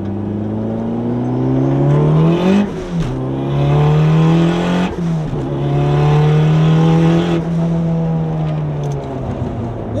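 Turbocharged Honda Civic Si four-cylinder engine heard from inside the cabin, pulling hard under full acceleration. The revs climb, drop sharply at a gear change, climb again and drop at a second shift about five seconds in, then hold for a couple of seconds. Near the end the revs fall away steadily as the car slows.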